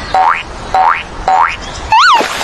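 Cartoon 'boing' spring sound effect, three in a row about half a second apart, each a short note that springs sharply upward in pitch, laid over a kangaroo's hops. Near the end a different quick up-and-down sliding tone begins.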